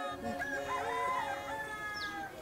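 A long, drawn-out animal call that rises and then falls over about a second, over faint steady tones.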